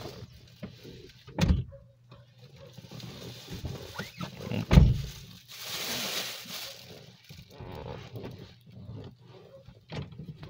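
Handling noises inside a car: two dull thumps, the second the louder, then a stretch of rustling from a plastic shopping bag and small fumbling sounds.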